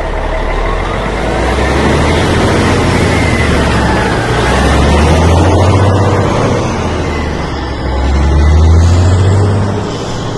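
Intro sound effect of a vehicle engine, a dense rumble with a heavy low end that swells louder twice, loudest near the end.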